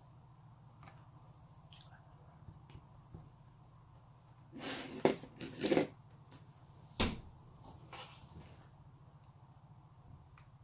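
Hands handling craft materials at a table: a rustling spell about halfway through as lace trim is pulled off its spool, then a single sharp knock a second later. A low steady hum runs underneath.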